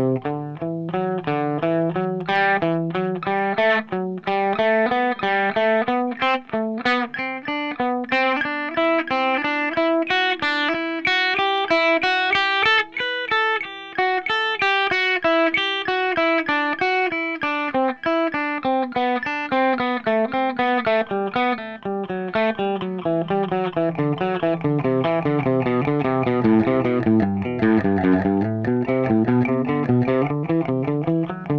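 Electric guitar playing a fast run of single alternate-picked notes: a three-notes-per-string scale played in sequences. The run climbs in pitch to about halfway, descends through most of the rest, and begins to climb again near the end.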